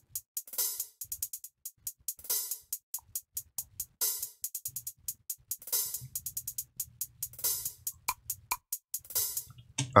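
Programmed trap hi-hats played back from the DAW, treated with a Waves Smack Attack transient shaper and an autopan. They run in fast rolls of short ticks, with a longer, noisier hit about once every 1.7 seconds.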